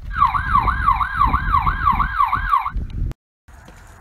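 Siren sound: a quick wail sweeping up and down about two and a half times a second, over a low rumble, stopping about three seconds in.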